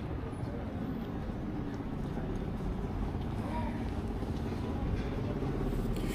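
City street ambience: a steady low rumble of traffic, with faint voices of passers-by now and then.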